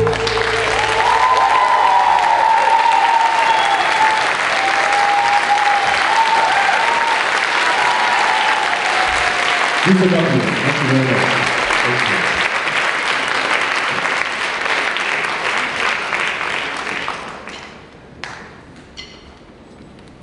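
Audience applauding after a song at a live concert. A man's voice sounds briefly over it about halfway through, and the applause dies away a few seconds before the end.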